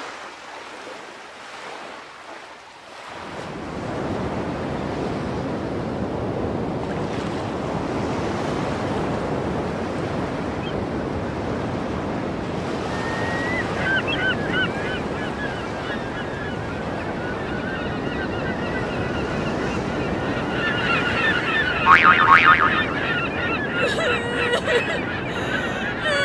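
Surf washing steadily on a shore, coming in a few seconds in. From about halfway, birds call with wavering cries that grow louder near the end.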